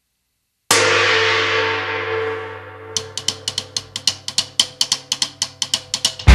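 A rock band's live opening: a sudden crash that rings out and fades over about two seconds, then quick, even percussive ticks, about five a second, leading into the song.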